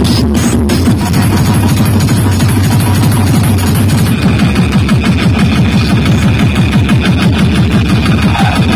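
Very loud electronic dance music with heavy bass played through a large DJ sound system with horn loudspeakers, a fast pulsing beat throughout.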